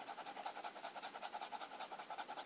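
Broad fountain-pen nib of a Lamy 2000M scratching rapidly back and forth on paper in a quick, even rhythm, hatching a solid ink patch to test how wet the pen writes.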